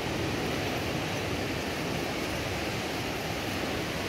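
Surf washing onto a sandy beach, a steady rushing noise with no distinct breaks.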